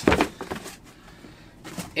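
Books and cardboard boxes being handled: a short knock as a book is set down at the start, then faint rustling and shuffling.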